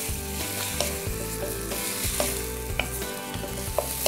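Beef strips and sliced red onion sizzling in oil in a hot non-stick wok, being stirred with a wooden spoon as they brown, with a few light taps and scrapes of the spoon against the pan.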